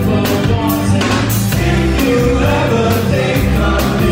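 Live band playing a new wave song on electric guitar, bass guitar and drums, with a steady drum beat and held notes above it.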